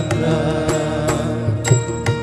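Malayalam Ayyappa devotional song playing: a held, wavering melody line over a steady drone, with sharp struck notes coming in about a second and a half in.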